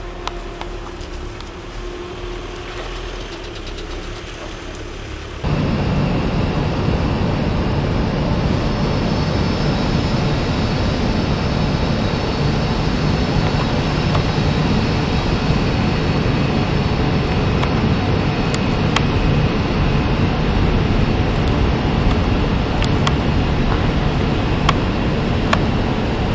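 Steady industrial machinery noise with faint high whining tones, starting abruptly about five seconds in over a quieter low hum.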